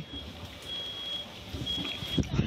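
Rustling and movement noise on a police body camera's microphone as the officer climbs and handles gear, with a faint high beep sounding on and off, about half a second at a time.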